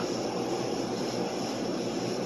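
Steady mechanical hum of room ventilation, like air conditioning and fans running, with no distinct events.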